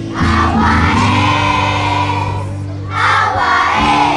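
A choir of schoolchildren singing a song together over instrumental accompaniment, with a short break between phrases near the end.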